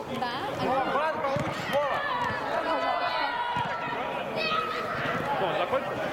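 Several men's voices shouting and calling to each other across a football pitch, overlapping, with a few short thuds underneath.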